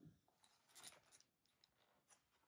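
Near silence, with two faint brief rustles of a hardcover picture book being handled: one at the start and one about a second in.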